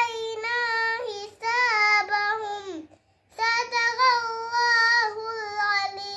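A young girl reciting the Qur'an in a melodic chant: two long drawn-out phrases on held notes, each falling off at its end, with a short breath pause about halfway through.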